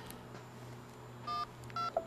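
Two short keypad beeps from a mobile phone as its buttons are pressed, about half a second apart in the second half, over faint room tone with a low hum.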